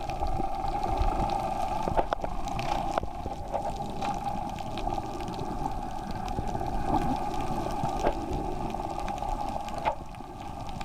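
Underwater ambience picked up by a submerged camera: a steady mid-pitched hum over a low rumble, with scattered faint clicks.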